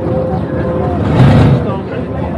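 A 1960s Ford Mustang fastback's engine running as the car rolls slowly across grass, its low rumble swelling a little past the middle. Crowd chatter runs underneath.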